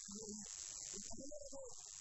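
A man's voice through a public-address system in a sing-song, drawn-out sermon delivery, over a steady high hiss.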